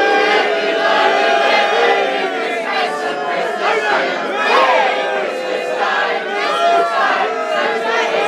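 Audience and cast singing a Christmas singalong song together, many voices loud and only roughly in unison.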